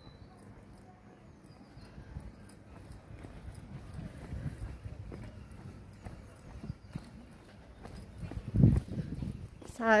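Footsteps on a tarmac lane from someone walking downhill with a handheld camera, faint and uneven, with a louder low thump near the end. A woman starts speaking just before the end.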